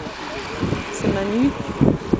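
Voices calling out, with wind noise on the microphone, as a bunch of road-racing cyclists passes close by.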